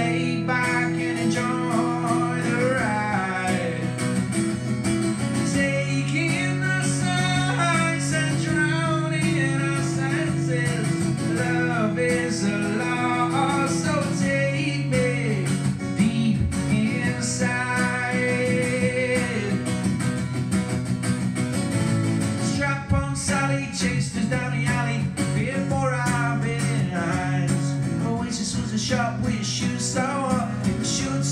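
Live solo acoustic performance: an acoustic guitar strummed and picked steadily, with a male voice singing over it into a microphone.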